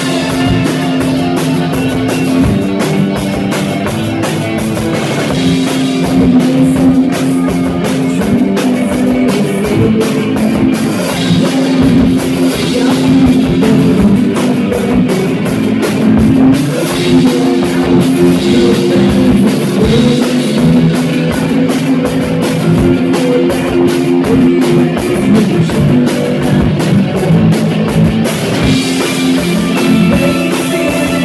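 Live rock band playing loudly: drum kit, electric guitar and bass guitar, with a woman singing lead vocals into a microphone.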